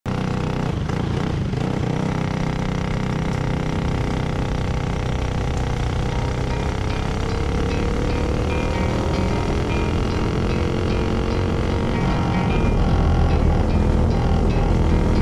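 Sr. Champ kart engine heard from on board the kart, running steadily as it rolls out and picks up speed. Its pitch climbs slowly midway, and it gets louder near the end.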